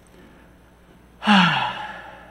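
A man sighs audibly a little over a second in: one breathy exhale, falling in pitch.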